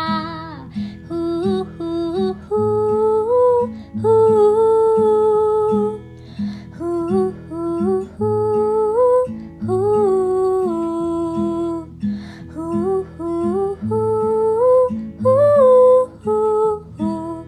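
Background music: an acoustic guitar strummed under a woman's voice humming a melody without words.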